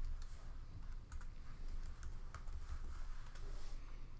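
Typing on a computer keyboard: irregular runs of keystroke clicks as an email address and password are entered, over a steady low hum.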